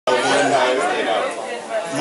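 People talking, with several voices chattering over each other.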